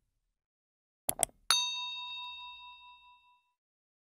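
A quick double mouse-click sound effect, then a single bright bell ding that rings out and fades over about two seconds. This is the notification-bell sound of a subscribe animation.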